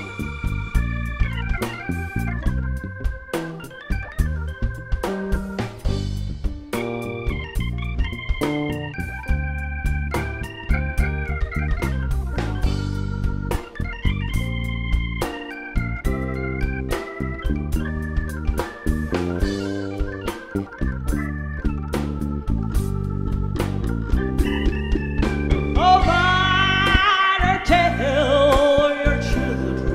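Live blues band: a keyboard plays an organ-toned melodic solo over electric bass and a drum kit. Near the end a sung note with a wide vibrato comes in over the band.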